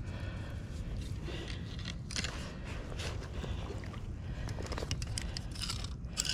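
Crackly rustling and scraping close to the microphone, in short bursts over a steady low rumble, as fishing gear is handled at the water's edge.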